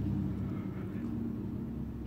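A steady low mechanical drone with a hum in it, easing slightly over the two seconds.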